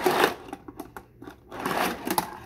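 Fingerboard's small wheels rolling across a wooden mini halfpipe ramp: a rough rolling whir right at the start, then again near the end.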